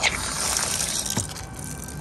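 An outdoor hose-bib faucet is opened with a click, and water then gushes out of the spout with a hissing spray that is strongest in the first second and eases off after that.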